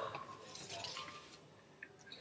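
Faint rustling of paper being handled, dying away near the end.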